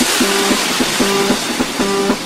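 Tekstyle hard-dance track in a breakdown with no kick drum or bass: a fading noise wash under a short mid-pitched riff that repeats about every 0.8 seconds.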